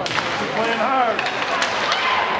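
Hockey sticks cracking sharply against the puck and ice as a faceoff is taken, followed by a few lighter stick clacks, with voices of players and spectators in the rink.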